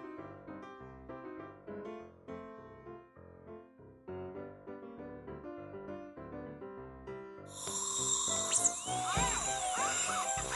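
Background music of short, light notes. About seven and a half seconds in, a dentist's drill sound effect starts over it: a loud, high whine that rises and falls in pitch.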